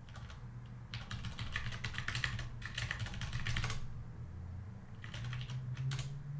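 Typing on a computer keyboard: a quick run of keystrokes lasting a few seconds, then a shorter burst near the end.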